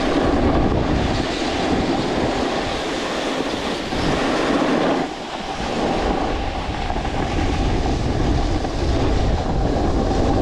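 Edges scraping steadily over groomed snow as the rider slides downhill, easing off briefly about halfway through, with wind rumbling on the microphone.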